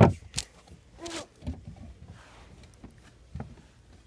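Scattered knocks, scrapes and rustles of a person squeezing and crawling through a tight space, with the phone being handled close to the microphone. There is a sharp knock at the very start, and the loudest movement comes about a second in.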